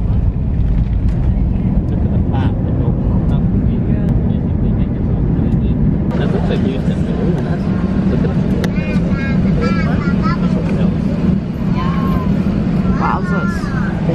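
Jet airliner cabin noise during the landing rollout: a loud, steady low rumble of engines and wheels on the runway, with the wing spoilers raised. Voices come in over it during the second half.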